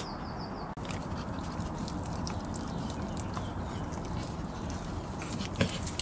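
A pet dog making noises while it rolls on its back at play, with one short louder sound near the end.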